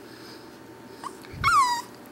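Corgi puppy (Cardigan and Pembroke Welsh Corgi mix) giving a faint brief squeak about a second in, then a short, high cry that falls in pitch.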